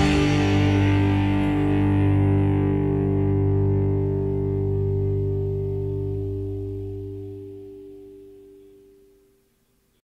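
The last chord of an indie rock song, played on guitar through effects, held and ringing out, fading slowly until it dies away about nine seconds in.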